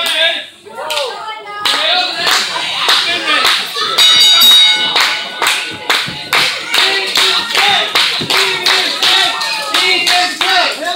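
Crowd clapping in a steady rhythm, about two to three claps a second, with voices shouting over it. A loud high-pitched note sounds briefly about four seconds in.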